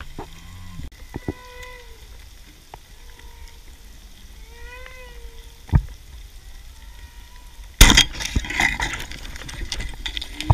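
Humpback whale song heard underwater: a series of drawn-out moaning tones with overtones, some gliding and one arching up and back down in the middle. About eight seconds in, a sudden loud rush of water noise cuts in and lasts a couple of seconds.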